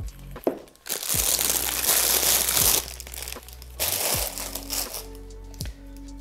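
Clear plastic wrapping crinkling as a camera lens is unwrapped by hand, in one long bout followed by a short one, over background music.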